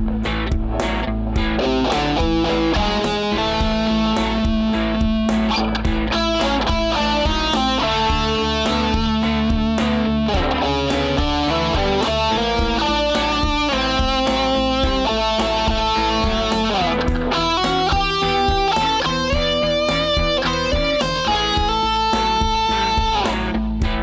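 Electric guitar (a Kramer) playing an improvised lead over a backing track with a steady beat, with held notes and pitch bends and slides. Out-of-scale notes are thrown in on purpose and resolved by bending or sliding to the correct note.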